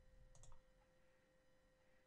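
Near silence: room tone with a faint steady hum, and a single faint computer mouse click about half a second in.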